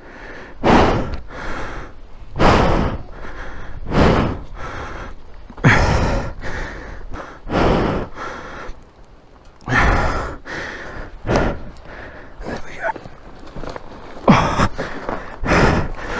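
A person's heavy, laboured breathing and gasps of effort, one hard breath every second and a half to two seconds, from straining at a fallen motorcycle.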